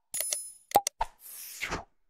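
Sound effects of an animated subscribe end screen. A few quick clicks and pops are joined by a short bright bell-like ring in the first half second, another pop follows, and a brief whoosh comes near the end.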